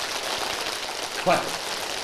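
A hall full of people clapping as fast as they can at once, a dense, even patter of many hands, each person counting their own claps in a timed speed-clapping test. A man's voice shouts "快" (faster) once about a second in.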